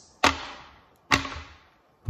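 Two sharp knocks about a second apart, each dying away quickly: plastic ball-and-stick molecular models being set down on a hard surface.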